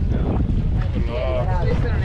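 Wind buffeting the action camera's microphone on a moving inflatable boat: a dense, irregular low rumble. A voice is briefly heard about a second in.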